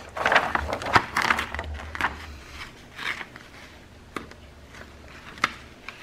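A clear plastic carrier sheet of glitter heat-transfer vinyl crinkling and rustling as it is handled and positioned by hand, busiest in the first couple of seconds, then a few isolated light crackles.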